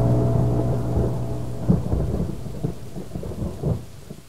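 Thunderstorm sound effect: rain with rumbling rolls of thunder, fading out steadily toward the end.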